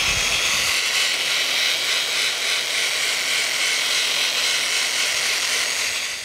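Power sander with a foam-padded sanding disc running steadily against the flat side of a goncalo alves canteen body held still on a locked lathe: a continuous motor whir with the hiss of abrasive on wood.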